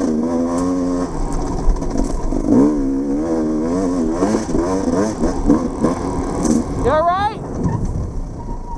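Off-road dirt bike engine running under a rider, its pitch rising and falling as the throttle is worked on a sandy trail. Near the end it gives one quick sharp rev, then drops to a lower, quieter run.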